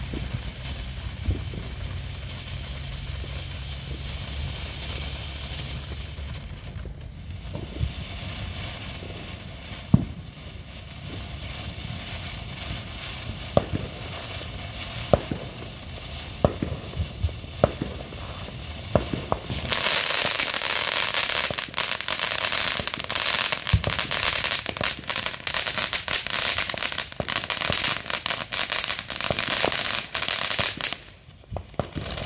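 Ground fountain fireworks spraying sparks with a steady hiss. Scattered sharp pops come through the middle, and about two-thirds through the sound turns much louder into dense crackling.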